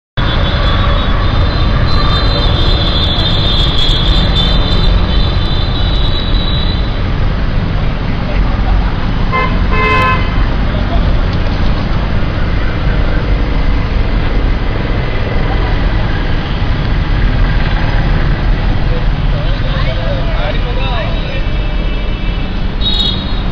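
Street traffic with a steady low rumble and vehicle horns honking: a long horn tone over the first several seconds and a short honk about ten seconds in.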